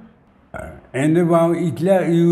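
A short pause, then a voice from the film's dialogue starts about a second in, drawn out in long held tones.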